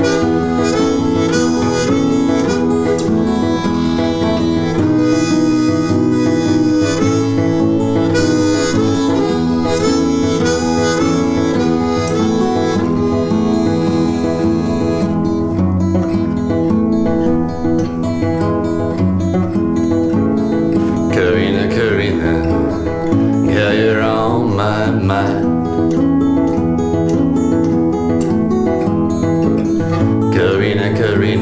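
Suzuki Manji diatonic harmonica in A playing an instrumental break over a Martin 000-15M all-mahogany acoustic guitar's steady accompaniment, with no singing. The harmonica is brightest in the first half and has bent, sliding notes a little past the middle.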